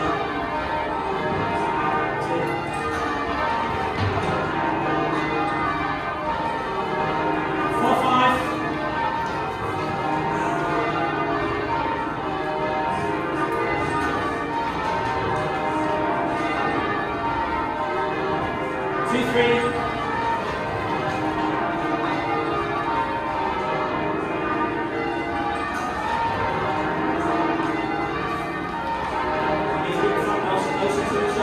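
Church tower bells being rung in changes by a full band of ringers on ropes, the strokes running on in a continuous, even cascade.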